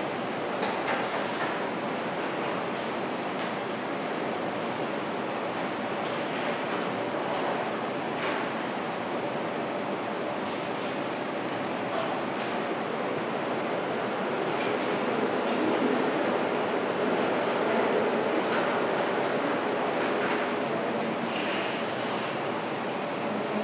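Steady room noise with a low hum, swelling a little about two-thirds through, and occasional faint rustles and clicks of papers being handled at the tables.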